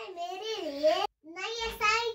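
A little girl's high, sing-song voice in two wavering phrases, with a short break just after the first second.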